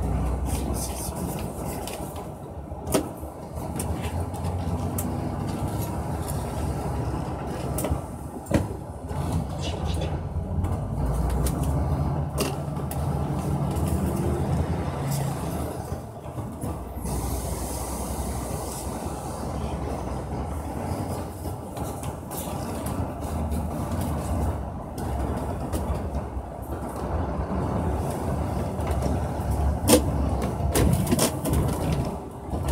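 Engine and road noise inside a moving vehicle's cabin: a steady low rumble as it drives, with a couple of sharp clicks, one about three seconds in and another a little past eight seconds.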